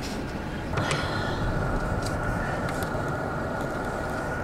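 Vehicle engine idling with a steady low rumble, and a steady high-pitched tone coming in about a second in and holding.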